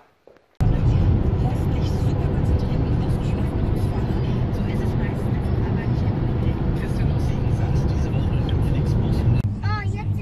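Road and engine noise inside a vehicle's cabin at motorway speed: a loud, steady rumble that cuts in suddenly about half a second in and runs evenly until a cut near the end.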